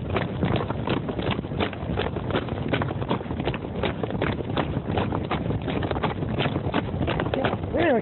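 A quick, steady patter of sharp knocks, about three to four a second, over a rustling noise.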